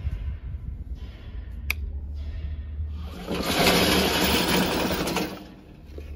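Brushless electric drive motors of a tracked remote-control lawn mower whirring as it drives on battery power with the gasoline engine off. A sharp click comes about two seconds in, and the sound is louder and noisier from about three to five seconds in.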